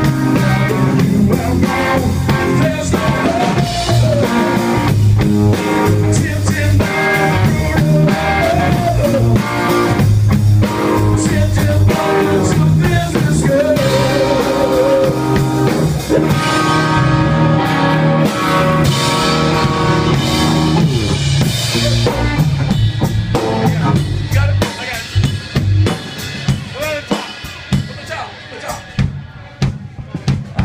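Live rock band playing: an electric guitar lead with bending notes over a drum kit. In the last few seconds the band thins out to sparser drum hits and quieter playing.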